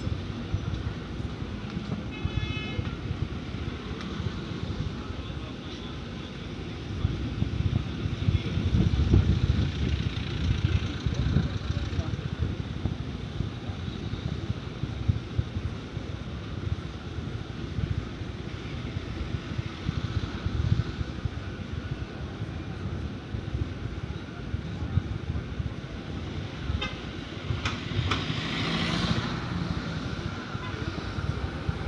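Street traffic running steadily on the road beside the sidewalk, with a short car horn toot about two seconds in.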